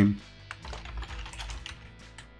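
Typing on a computer keyboard: a quick run of light key clicks as a line of code is typed.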